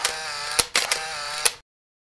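Camera sound effect: sharp shutter-like clicks over a steady motorised winding whir, which cuts off suddenly to dead silence a little over halfway through.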